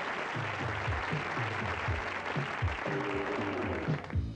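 Studio audience applause carrying on from the previous sketch as music starts under it: a steady run of low bass notes comes in about half a second in, with higher sustained notes joining near the end.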